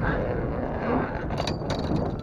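Steady low rumble on a fishing boat, with a few sharp clicks and knocks from gear handled on deck about one and a half seconds in.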